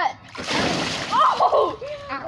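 A boy dropping into an inflatable pool of water and Orbeez water beads: a splash and slosh of water and beads starting about half a second in. A voice cries out during the splash.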